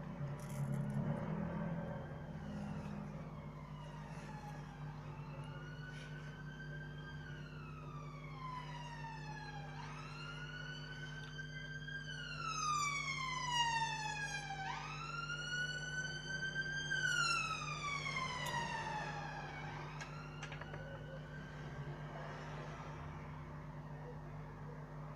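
A wailing siren, its pitch rising and falling slowly about once every five seconds. It grows louder toward the middle and then fades away, as if passing by. A steady low hum runs underneath.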